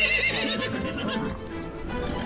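A horse whinnying: one high, wavering call that fades out within the first half second, over background music.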